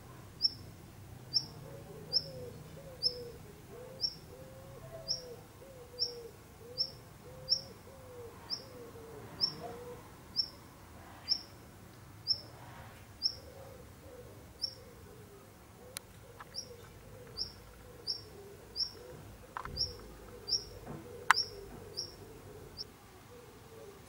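Male black redstart calling: a steady series of short, high, downward-slurred 'tsip' notes, a little more than one a second. The calls are loud for so small a bird. Two sharp clicks come through in the second half.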